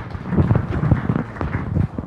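Audience applauding: dense, steady clapping from a lecture-hall crowd.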